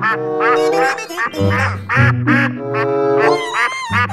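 Cartoon duck quack sound effects, repeated in quick succession over a bouncy children's background music track.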